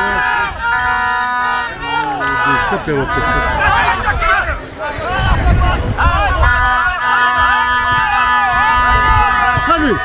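Men's voices shouting on and around a football pitch during an attack on goal, with several long held calls. A low rumble of wind on the microphone runs underneath.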